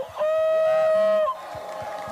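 A voice holding one long shouted note for about a second, steady in pitch, then a quieter crowd noise.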